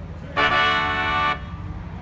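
A car horn honking once, a steady blast about a second long that cuts off sharply.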